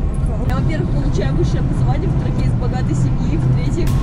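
Car cabin driving noise: a steady low rumble of engine and road heard from inside the moving car.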